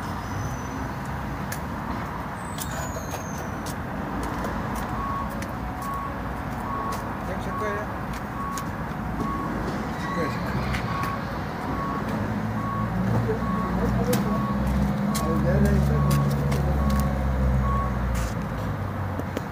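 A vehicle's reversing alarm beeping at an even pace of about one and a half beeps a second, starting about five seconds in. Over the last few seconds a vehicle engine's low rumble grows louder.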